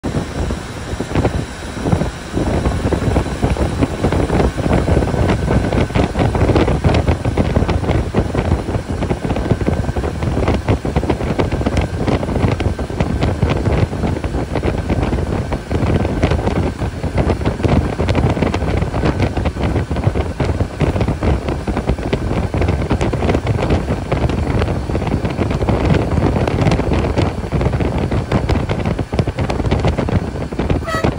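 Cabin noise of an SETC AC sleeper coach at highway speed: steady engine and road noise, with frequent rattles and knocks from the bus body.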